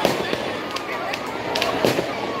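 Firecrackers in a burning effigy going off in an uneven series of sharp bangs, with the loudest near the start and near the end. Crowd voices run underneath.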